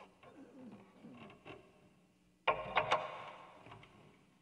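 Faint low gliding tones, then a sudden knock with a short rattling clatter about two and a half seconds in that fades over about a second.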